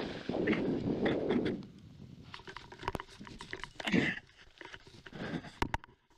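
Wind rushing over a helmet-mounted microphone during a low landing approach, dying away after about a second and a half. Quieter scattered clicks and rustles follow, with a short breathy sound about four seconds in.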